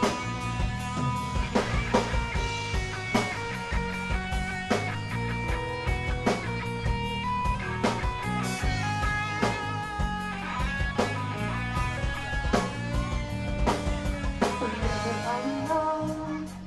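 Rock band playing: guitar and bass over a drum kit, with a strong drum hit about every second and a half.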